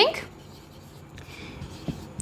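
Marker pen writing on a whiteboard: faint scratching strokes, with a small tap near the end.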